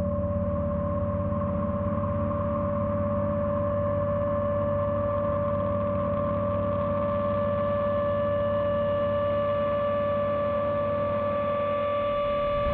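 Dark horror-score drone: a steady low rumble under held metallic ringing tones, with higher tones slowly creeping in.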